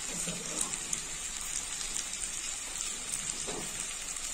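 Masala-coated chicken pieces frying in oil in a clay pot: a steady sizzle with small crackles.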